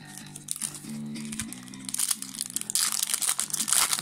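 A foil Yu-Gi-Oh! booster pack wrapper crinkling as it is handled and torn open, getting louder in the second half.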